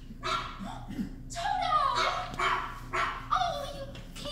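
A small dog yipping and whining, a run of short high calls with falling pitch.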